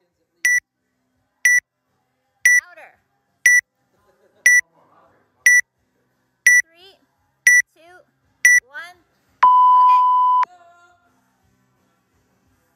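Workout timer counting down: nine short high beeps one second apart, then one long lower beep about a second long that marks the start of the workout.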